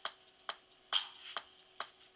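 Electronic keyboard's built-in metronome ticking at about two beats a second, with a louder accented click on every fourth beat.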